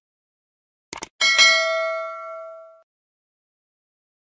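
Subscribe-button animation sound effect: a short click about a second in, then a bright notification-bell ding that rings out and fades over about a second and a half.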